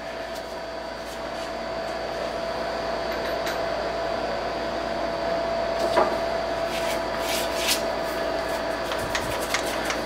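A steady machine hum with a constant mid-pitched tone running under it, with a light click about six seconds in and a few faint ticks soon after.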